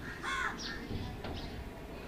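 A crow cawing once, faintly, about a quarter of a second in, with a few faint higher bird chirps.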